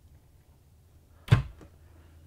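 A solid-wood upper kitchen cabinet door shutting, one sharp knock about a second and a half in, over quiet room tone.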